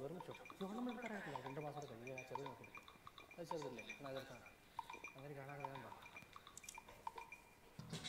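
A man's drawn-out straining groans and grunts while lifting weights, several in a row and faint. A short laugh comes near the end.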